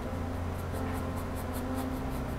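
Nylon flat paintbrush loaded with thick acrylic paint dabbing and scrubbing on stretched canvas: quick, scratchy strokes, about five a second.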